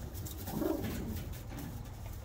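Racing homer pigeon giving a single low coo about half a second in.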